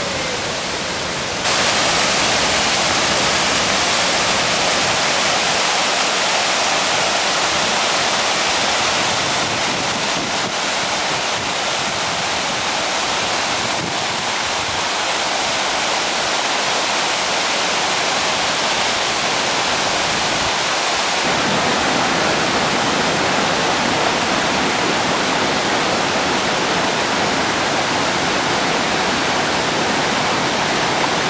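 Rushing water of cascades and small waterfalls pouring over rocks, a steady loud rush of white water that gets louder about a second and a half in.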